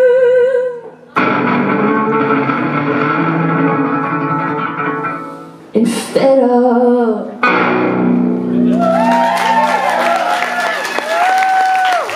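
A woman's voice holds a sung note with vibrato over guitar. A strummed guitar chord rings out, followed by one more short sung phrase and a final chord, as the song ends. About three-quarters of the way through, an audience begins applauding and cheering.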